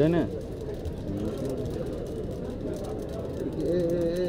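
Murmur of several voices over a steady background hum, after a short spoken phrase at the start; near the end one voice begins a long, wavering held note of chanting.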